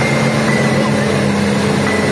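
Hitachi hydraulic excavator's diesel engine running steadily, with a constant low hum and a pulsing note beneath it.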